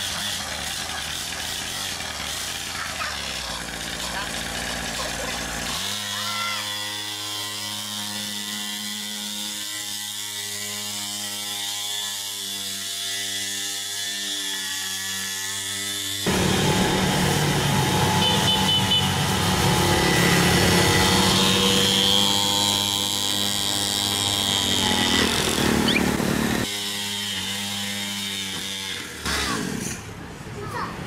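Small engine of a children's mini dirt bike running, its sound changing abruptly a few times and louder through the middle stretch.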